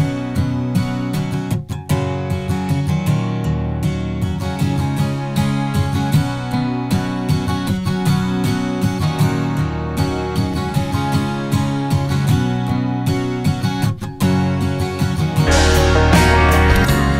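Recorded multitrack playback of a strummed acoustic guitar doubled by a 'high six' guitar strung with the high strings of a 12-string set, the two panned left and right so that together they sound like a 12-string guitar. It gets louder near the end.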